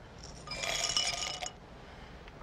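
Handful of pills and capsules poured from a bottle into a glass tumbler, rattling and clinking against the glass for about a second, starting about half a second in.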